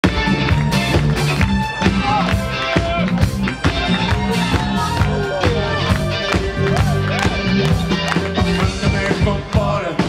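A live band playing a song: drums keeping a steady beat under a bass line, electric guitar and keyboards, with a male lead voice over the top.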